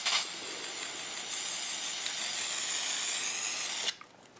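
Krylon aerosol spray-paint can spraying in one continuous burst: a steady hiss that starts suddenly, holds for about four seconds, then cuts off.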